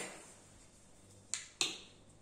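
Two quick sharp plastic clicks, about a quarter of a second apart, from the cap of a bottle of black paint being opened.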